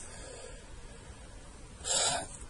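Low room noise, then a short, sharp breath in through the mouth near the end, just before speaking again.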